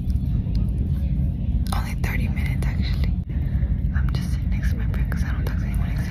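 Soft whispered speech, too faint to make out, in a couple of short stretches over a steady low rumble.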